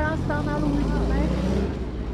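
Low, steady rumble of a motor vehicle's engine running close by, with a voice heard briefly at the start.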